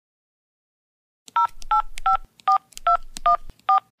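Phone number being dialed on a keypad: seven short touch-tone beeps, each a two-note tone, about two and a half a second, starting after a silent first second or so.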